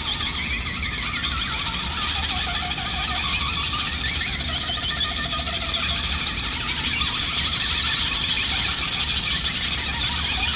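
Spooky noises: a steady eerie drone with many short warbling squeals over it, which cuts off suddenly just after the end.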